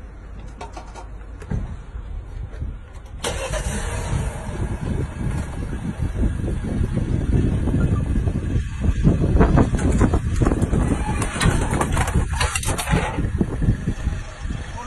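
A car engine starting about three seconds in and then running, with a loud rushing noise over it.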